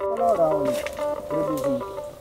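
A man talking, with background music under him: one steady held note.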